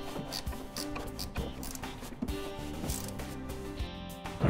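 Background music with sustained tones, quieter than the narration around it, with a few faint clicks and knocks.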